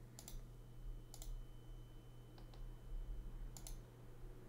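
Computer mouse button clicked four times, about a second apart, each click a quick double tick of press and release, over a faint steady low hum.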